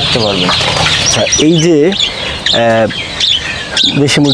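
Farm poultry clucking and calling, with many short high chirps throughout and one strong call a little past the middle.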